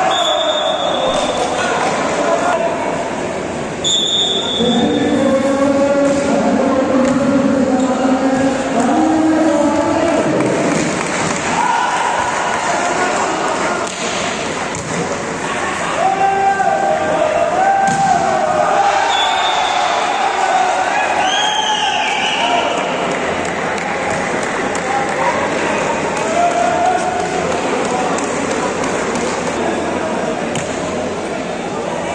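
Volleyball being struck with sharp smacks during a rally in a large hall, over a crowd shouting and chanting with long held voices. A few short high whistles cut through, near the start, about four seconds in and about nineteen seconds in.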